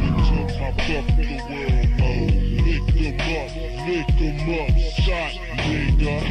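Memphis rap track: rapped vocals over deep bass hits that slide down in pitch, with a steady hi-hat-like ticking on top.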